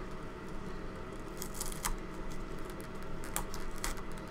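Black tape being peeled up by hand from a flight controller board and its wires, giving a few short crackles and rips over a steady low hum.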